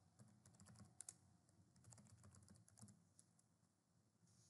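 Faint typing on a computer keyboard: quick, irregular key clicks that stop a little before the end.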